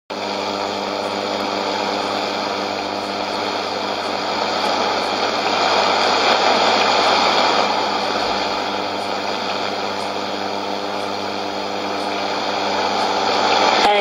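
Shortwave receiver tuned to an AM signal at 15555 kHz, giving a steady hiss of static with a buzzing hum under it and faint ticks, before any programme audio is heard.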